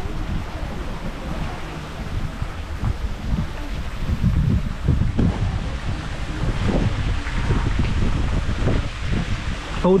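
Wind buffeting the camera's microphone: a low, uneven rumble that swells and dips throughout.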